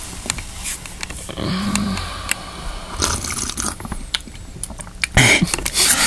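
Close-up handling noise on a camera's microphone: clothing rubbing and brushing against it, with scattered clicks and light taps, and a louder scuffle about five seconds in.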